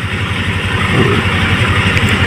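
A motor vehicle's engine running steadily, with an even low pulse under a hiss.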